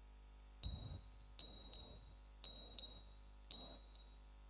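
A small metal bell struck six times, each a sharp, high ring that fades within about half a second, in a pattern of one, then two pairs, then one.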